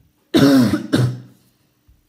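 A young man coughing twice into his fist, two coughs in quick succession, the first the louder.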